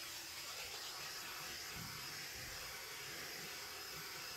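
Handheld butane torch flame hissing steadily as it is passed over wet acrylic pour paint, heating the surface to bring up cells and fine lacing.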